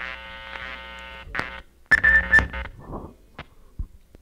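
A steady held tone, level and unchanging in pitch, for about a second and a half. It is followed by a brief high-pitched tone mixed with a few short sounds, then scattered sharp clicks.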